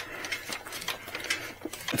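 Faint, irregular small clicks and rattles from the rear frame and rack of a folding e-bike as it is pushed down onto its freed-up rear shock.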